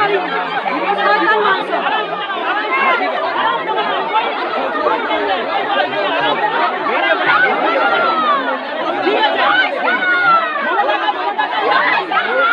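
A crowd of many people talking at once, their voices overlapping continuously with no single speaker standing out.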